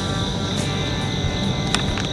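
Steady evening insect chorus with a continuous high-pitched drone, over a low rumble of lakeside background noise. One sharp click comes near the end.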